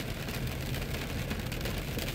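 Steady noise inside a car's cabin in heavy rain: rain on the car's glass and body over a faint low engine hum.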